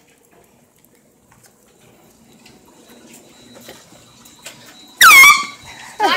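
A hand-held air horn blasting once, very loud, for about half a second near the end; its pitch drops sharply at the start and then holds steady. Before it there are only faint scattered clicks.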